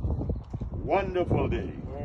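A person's voice, a short drawn-out utterance in pitch-bending tones, over low wind rumble on the microphone.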